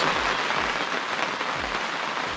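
Rain falling on the plastic cover of a polytunnel, heard from inside as a steady, even hiss.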